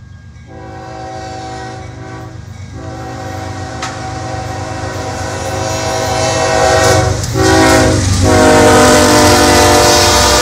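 CSX freight locomotive's multi-chime air horn sounding a grade-crossing signal: long, long, short, long, over the diesel engines' low rumble. It grows steadily louder as the train approaches and passes close by.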